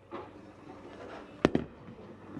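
A bowling ball released onto the wooden lane, landing with a single sharp thud about one and a half seconds in.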